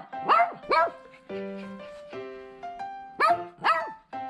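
Toy poodle barking in two pairs of short, high barks: two near the start and two more about three seconds in. Background music with held keyboard notes comes in between them.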